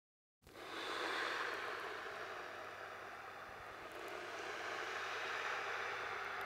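A hiss-like rushing noise, like wind or air, fading in after a brief silence as the intro of a hip-hop track. It dips slightly midway and builds again near the end.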